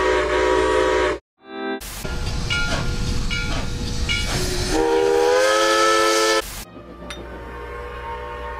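Grand Trunk Western 6325's chime steam whistle blowing in several blasts: a loud blast of about a second and a half, a brief toot, then, over a steady hiss, a few short toots and a long blast that slides up in pitch before cutting off suddenly.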